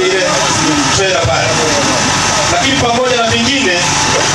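A man speaking Swahili into a handheld microphone, talking continuously over a steady background noise.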